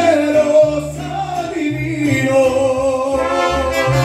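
Mariachi music: a male singer sings through a microphone, holding one long note in the second half, over deep bass notes that change about once a second.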